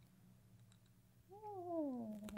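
Faint steady room hum, then about a second and a half in a woman hums a single appreciative "mmm" on tasting a drink. It rises a little and then slides down in pitch.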